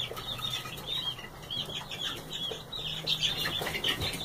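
A flock of Barred Rock chicks peeping continuously: many short, high chirps overlapping without a break.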